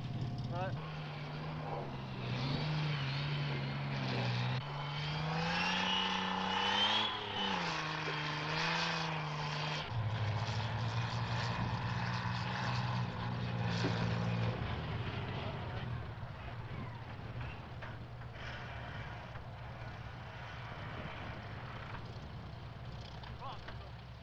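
Engine of a CVR(T) tracked armoured vehicle, the Samson recovery vehicle, driving up. Its pitch rises and falls with the throttle for about ten seconds, then holds steady and fades to a lower hum after about fifteen seconds.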